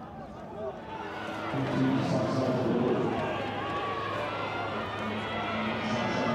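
Stadium crowd, many voices at once, growing louder about a second and a half in and then holding steady.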